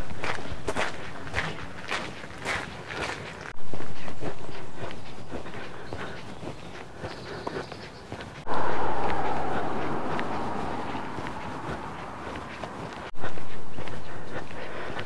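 Footsteps crunching on gravel at an even walking pace. About two thirds of the way in, a steady rushing noise joins them.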